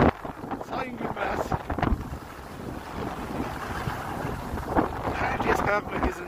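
Wind rushing over the microphone and skis scraping on snow during a ski run. Faint voices come in near the end.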